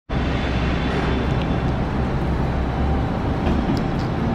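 Steady low rumbling background noise of a parking garage, with a few faint clicks near the end as the elevator doors open.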